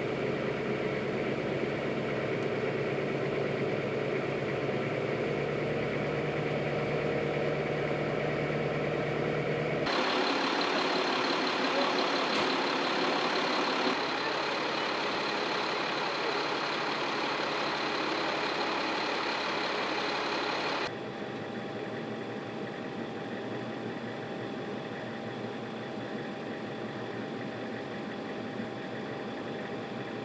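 Diesel engines of military cargo trucks running steadily, in three separate stretches that change abruptly about ten seconds in and again about twenty-one seconds in. In the first stretch a truck wades through floodwater with water churning around it; the middle stretch is louder and brighter, and the last is quieter.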